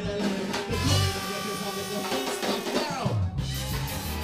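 Live ska band playing, with horns over drums and bass and a voice over the music. The bass drops out in the middle under held horn notes, and the full band comes back in near the end.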